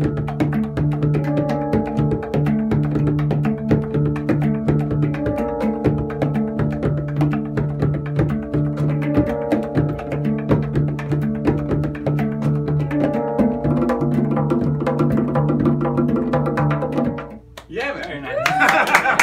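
Improvised duet of a Luna Clarity handpan in the Dark Earth (harmonic minor) scale, its struck steel notes ringing on, over fast hand strokes on a Persian tombak goblet drum. The playing stops shortly before the end.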